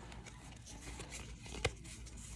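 Pokémon trading cards being handled and slid through the hands: faint rustling, with one sharp click about one and a half seconds in.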